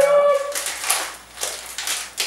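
A woman's high-pitched excited squeal, held for about half a second at the start. Then comes irregular crinkling and rustling as a snack packet is pulled and worked open by hand.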